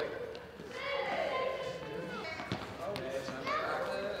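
Young children's voices echoing in a large sports hall, with a few sharp thuds of tennis balls hitting the hard floor.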